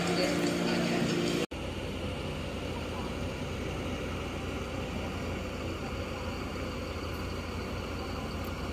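A steady low rumble of a bus engine idling, starting after an abrupt cut about a second and a half in. Before the cut there is a brief steady hum.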